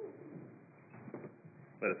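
Quiet room tone with a few faint, short, low sounds, then a man starts speaking near the end.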